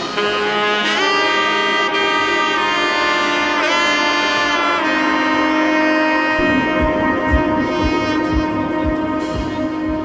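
Backing-track music: a melody of long held notes with a pitch bend near the middle. A steady beat of low thumps comes in about six and a half seconds in.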